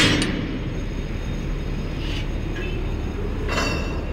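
Steady low rumble of a container crane's machinery running as its boom is lowered, with short metallic clinks: a sharp one at the start, a faint one about two seconds in, and a ringing one near the end.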